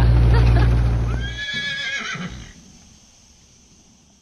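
A digger's engine running steadily until it drops away about a second and a half in, overlapped by a single horse whinny lasting about a second; after that only faint background.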